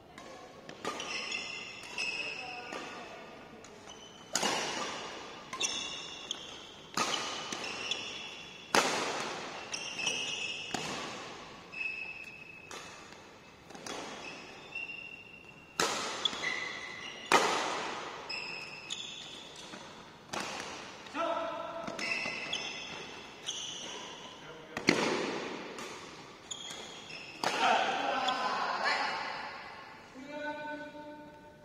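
Badminton rally: rackets striking the shuttlecock about once every second or so, each hit sharp and echoing in a large hall, with short high squeaks from shoes on the court between shots.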